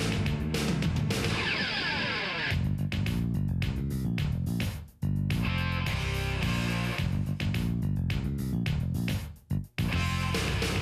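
Background music with a steady beat, dropping out briefly about halfway through and again near the end.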